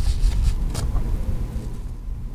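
Low rumbling handling noise with a couple of brief rustles, one at the start and one under a second in, as a needle and thread are pulled through the center of a ribbon bow.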